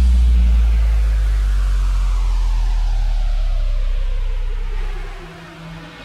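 Bass-music DJ set: a deep held sub-bass note fades out under a slowly falling pitch sweep. A new low synth note comes in near the end.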